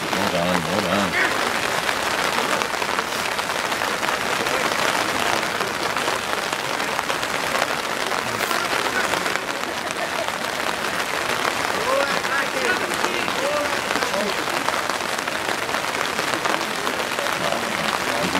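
Steady hiss of background noise on the open pitch, with faint, distant shouts from footballers now and then, most noticeable about two-thirds of the way through.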